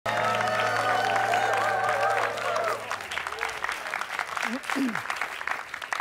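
Studio audience applauding while a live band holds a final chord that ends about three seconds in; the clapping carries on after it, with a brief voice calling out near the end.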